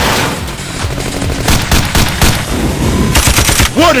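Bursts of rapid machine-gun fire sound effects, with a dense volley a little after three seconds in.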